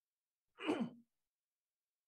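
A person's short sigh, a single breathy voiced sound of about half a second that falls in pitch.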